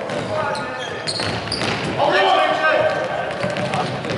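Futsal ball being kicked and bouncing on a wooden sports-hall floor, with short thuds throughout, under players' voices calling out that are loudest about halfway through, all echoing in the hall.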